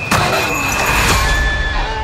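Loud trailer sound effects: a sharp hit just after the start, then a dense rush of noise over a low rumble with a thin held high tone, easing off toward the end.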